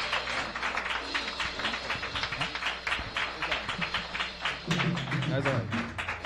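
A congregation clapping their hands together in a steady run of claps, with a man's voice calling out briefly near the end.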